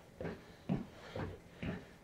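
Faint, soft footfalls on the cushioned rotating stair steps of a Matrix ClimbMill stair climber, about two steps a second.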